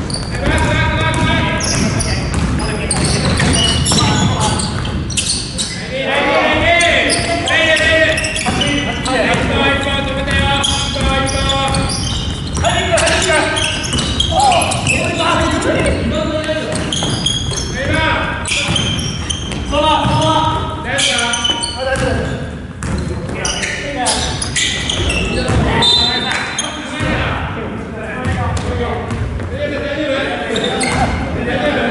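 Basketball bouncing on a wooden gym floor during play, with players calling out. The repeated knocks and voices echo in a large hall.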